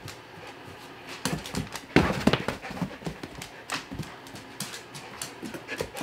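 Irregular clicking and tapping of a Belgian Malinois's claws and paws on a hard laminate floor as the dog moves about, with a louder knock about two seconds in.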